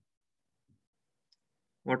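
Near silence with one faint, short click a little past the middle. A man's voice starts speaking just before the end.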